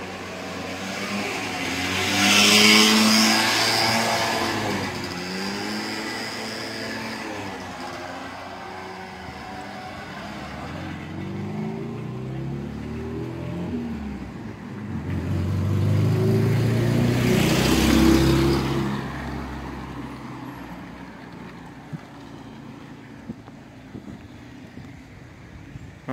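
Two motor vehicles drive past on the road, the first peaking about three seconds in and the second around eighteen seconds, each swelling and fading with its engine note bending in pitch as it goes by.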